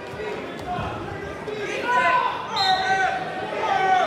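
Coaches and spectators shouting over one another during a wrestling takedown, with a low thud or two on the mat about a second in.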